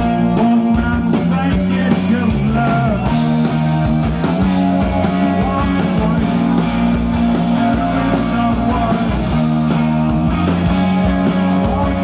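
Post-punk band playing live: electric guitar, bass and drums with steady cymbal strokes, and a man singing over them.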